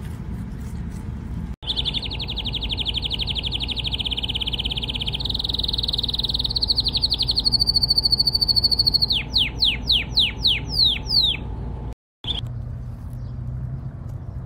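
Caged canary singing: long, fast rolling trills, then a string of quick downward-sliding whistles. The song starts suddenly and cuts off abruptly near the end.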